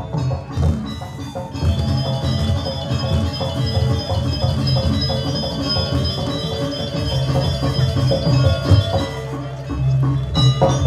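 Balinese gamelan playing: bright metallophone notes ringing in a repeating pattern over low, steady beats.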